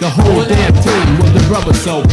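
Late-1980s New York hip hop track: a man rapping over a drum beat and a heavy bass line.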